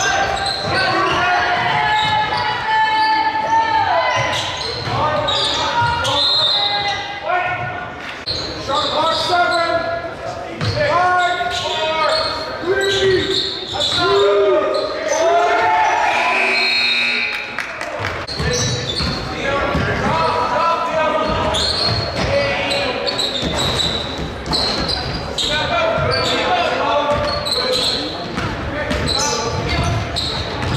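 Basketball game sound in a gym with a lively echo: a ball bouncing on the hardwood floor as players dribble, with voices of players and spectators calling out throughout.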